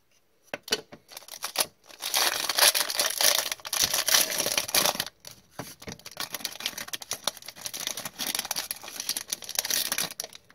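A few light knocks in the first two seconds, then a foil trading-card pack being torn open and crinkled, with the cards and cardboard inserts slid out of the wrapper.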